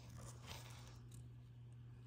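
Near silence: room tone with a steady low hum and a few faint ticks and crinkles from the plastic air capsule of a wrist compression bandage being handled in the fingers.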